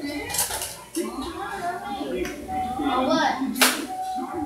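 Dishes and cutlery clinking at a meal table under people talking, with one sharp loud clink about three and a half seconds in.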